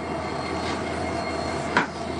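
A steady noise, like traffic or a passing train, with one sharp click near the end.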